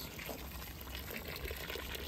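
Water pouring in a steady stream from a watering can's spout onto soft soil in a raised bed, watering in fresh plantings.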